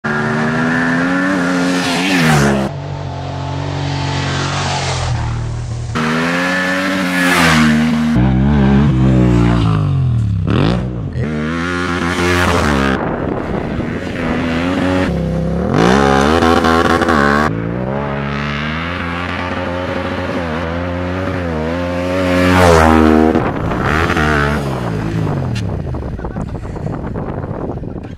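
Yamaha Ténéré 700's 689 cc parallel-twin engine revving hard off-road, its pitch repeatedly rising and falling with throttle and gear changes over several passes, the sound breaking off abruptly between shots.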